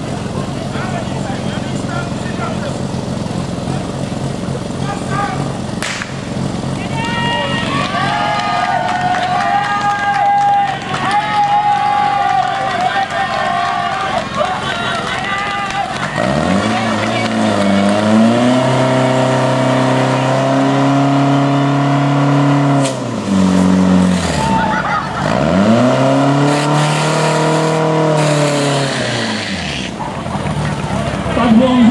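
Fire pump engine running hard to feed the hoses, its pitch held high from about halfway through, then dipping once and climbing back near the end. Before that, people are shouting over it.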